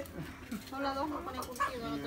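A dove cooing in the background in low, drawn-out notes, with faint voices under it.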